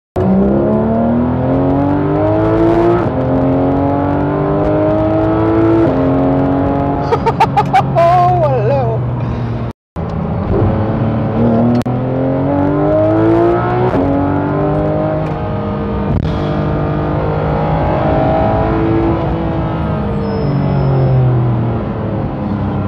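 Porsche 911 GT3 RS (991.2) naturally aspirated flat-six, heard from inside the cabin, revving hard and climbing in pitch through a series of quick upshifts of the seven-speed PDK gearbox, with a burst of sharp cracks about seven seconds in. The sound cuts out for a moment near the middle, then the engine pulls through more upshifts before the revs fall away near the end.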